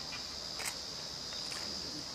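Insects chirring steadily at a high pitch, with a few faint ticks.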